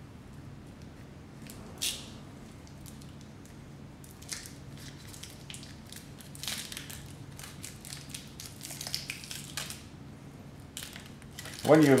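Parafilm being peeled off its paper backing by gloved hands: faint, scattered crinkling and rustling, busiest from about four to ten seconds in. A low steady hum runs underneath.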